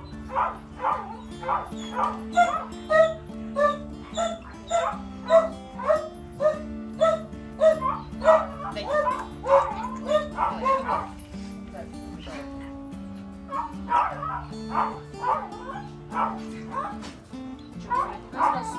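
A dog barking over and over in short, quick yips, two or three a second, that stop for a couple of seconds about two thirds of the way through and then start again, over background music with long held notes.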